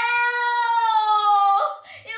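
A young woman's long, high wailing cry held on one note, sliding slightly down in pitch and breaking off near the end.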